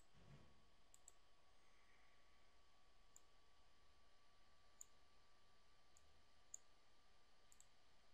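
Near silence with faint computer mouse clicks: about eight single clicks spread unevenly, a few in quick pairs, over a faint steady thin tone.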